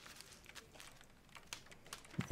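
Near silence with faint, scattered small clicks and taps.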